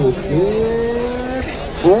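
A man's voice calling out in long, drawn-out held tones, without clear words, followed near the end by the start of more speech.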